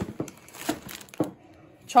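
Packaged food being handled on a table: plastic wrapping crinkling and a few light knocks as boxes and packages are moved.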